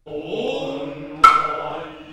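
Noh chanting (utai) by low male voices, long held tones in a slow, steady chant, with a new phrase beginning on a sharp attack just past halfway.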